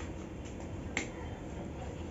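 A single sharp click of a whiteboard marker being handled about a second in, over faint steady room noise.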